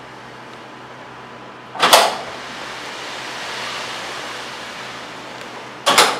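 A sharp knock or bang about two seconds in and another near the end. Between them a hiss swells and fades.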